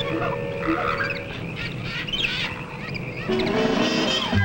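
Jungle soundtrack effects: a noisy bed of animal and bird calls with many short chirps. Music notes come in about three seconds in.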